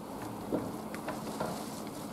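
Faint, scattered crackles and pops over a steady low hum, coming just after a laboratory electric explosion.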